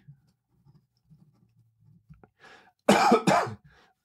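A man coughs twice in quick succession near the end.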